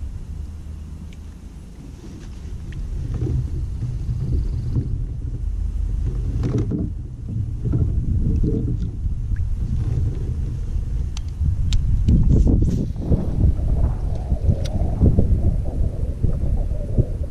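Wind buffeting an action-camera microphone: a low, rough rumble that gets louder in the second half, with a few light clicks and knocks from gear being handled in the kayak.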